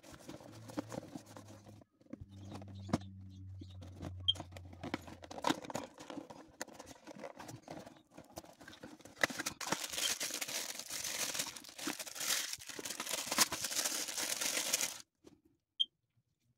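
An action-figure box being opened and the figure taken out of its packaging: cardboard flap scraping and clicking at first, then a louder stretch of crinkling and tearing packaging for several seconds that stops suddenly near the end.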